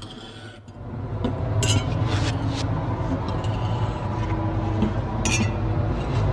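Algorithmic electroacoustic music: a low drone swells in about a second in and holds. Above it, glass clinks from processed wine-glass samples ring out at intervals, several near the middle and one more near the end.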